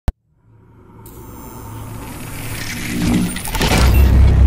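Cinematic logo-intro sound effect: a brief click at the very start, then a rising swell of rumble and hiss that grows steadily louder, cresting in a sharp whoosh near the end as a deep low rumble comes in.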